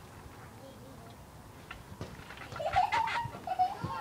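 A girl's high, wavering laugh starting a little past halfway, mixed with a few dull thuds from the trampoline mat as she drops into a split.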